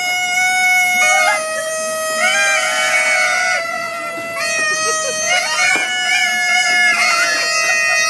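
Several kazoos buzzing together in long held notes at slightly different pitches, with short wavering slides between them.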